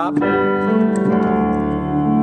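Piano sound from a stage keyboard: a chord struck and held, with more notes added about a second in as it rings on, filling in where there is no melody line.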